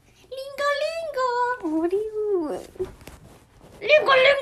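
A woman crying out loud in long, wavering wails whose pitch drops at the end about two and a half seconds in. A brief noisy stretch follows, and another wail starts near the end.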